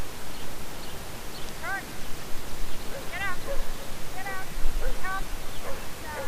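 A dog giving several short, high-pitched yipping barks, roughly one a second, over a steady outdoor hiss.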